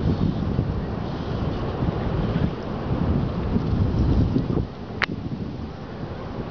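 Wind buffeting the microphone in a heavy low rumble, over the wash of surf. A brief sharp sound about five seconds in.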